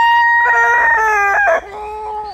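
A rooster crowing loudly: one long drawn-out note held steady, which drops near the end into a lower, quieter tail.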